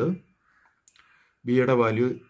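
Speech, broken by a pause of about a second in which a faint computer mouse click sounds, as the on-screen slider is grabbed.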